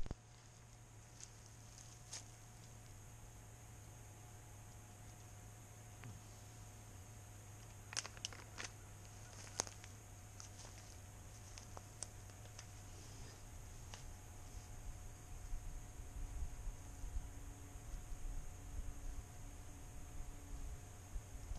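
Quiet outdoor ambience with a steady faint hum and a few faint clicks and rustles near the middle. Low, unsteady rumble of wind on the microphone builds in the last few seconds.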